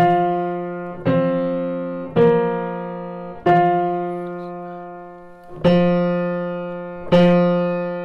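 A 1904 Bechstein Model A grand piano struck six times, each two- or three-note interval left to ring and die away, while the tuner checks the tenor strings for beats. The intervals are sounding nicely in tune.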